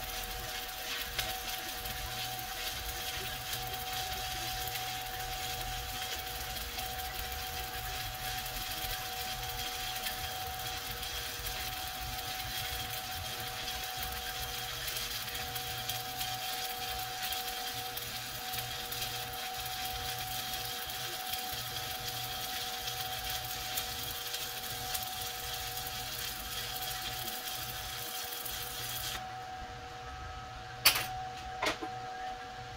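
Stick-welding arc from a Titanium Unlimited 200 welder burning a 7018 rod: a steady, continuous crackle that stops about a second before the end, as the arc is broken.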